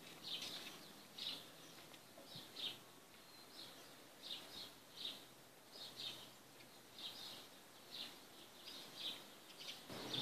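A small bird chirping faintly, short high calls repeating about twice a second, often in pairs.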